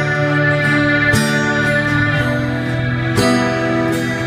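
Live rock band playing a slow instrumental introduction, with long held chords that change about once a second.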